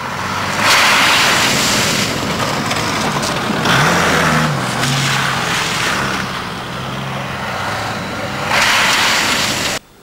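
Off-road 4x4 vehicles driving through deep snow close by: engines working under load, with revs rising once about three and a half seconds in, and loud rushing surges of snow thrown up by the tyres. The sound cuts off abruptly just before the end.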